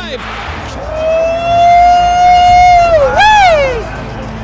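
A man's loud, high-pitched wordless yell, held on one pitch for about two seconds and ending in a quick rising-and-falling whoop.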